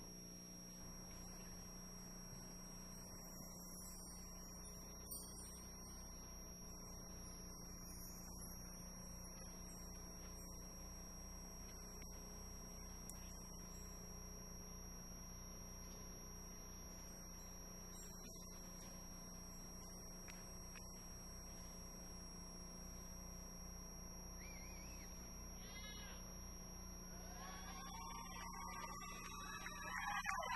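Faint background ambience over a steady electrical hum; in the last few seconds music starts up and grows louder.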